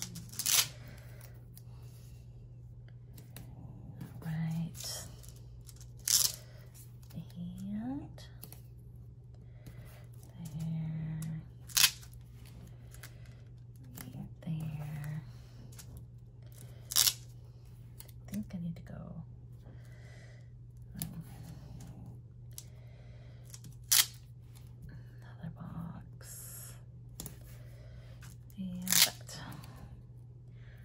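Paper planner pages and a clear plastic sheet being handled on a desk, with a sharp crackle every five or six seconds. Behind it a dog snores in short breaths every few seconds, over a steady low hum.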